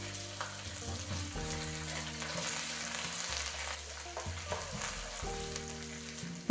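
Minced garlic and ginger sizzling steadily in hot oil in a wok.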